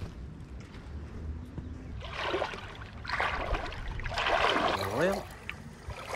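Feet in sandals wading through shallow, pebbly creek water, splashing in three bursts about a second apart.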